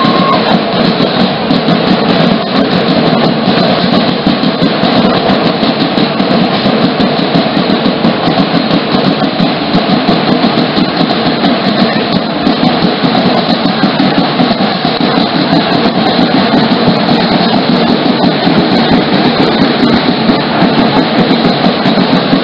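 Danza Apache drumming: several large drums beaten together in a fast, steady rhythm, loud and unbroken.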